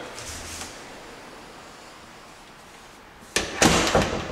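A louvered closet door knocking and rattling as it is moved by hand: two sharp, loud knocks close together near the end, after a stretch of low room noise.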